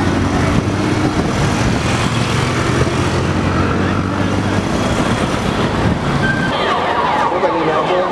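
Many motorcycle engines running together in dense street traffic, with a crowd's voices over them. Near the end the engines fade and many people are shouting over each other.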